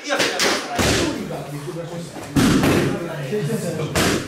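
Kicks and strikes landing on a padded kick shield: a quick run of thuds in the first second and a heavier hit a little past halfway, with voices in the gym.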